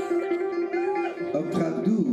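Live band music: held keyboard notes over bass guitar, with pitch-sliding sounds in the second half.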